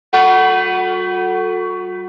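A single church bell strike that rings on, slowly fading.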